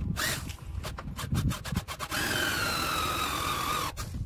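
Quick clatter and knocks of handling on a sheet-metal case, then a cordless drill/driver running for about two seconds with a whine that falls slowly in pitch. The sound is sped up along with the footage.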